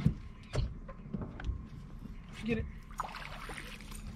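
A hooked bass splashing at the surface beside an aluminium jon boat as it is played and landed, with several sharp knocks.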